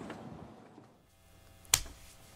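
Faint background noise fading to near silence, then a single sharp click near the end.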